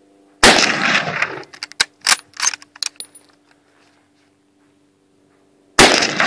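Mosin-Nagant M44 bolt-action carbine firing two shots about five seconds apart, the first early on and the second near the end, each trailing off over about a second. Between them come several short metallic clacks, the bolt being worked to chamber the next round.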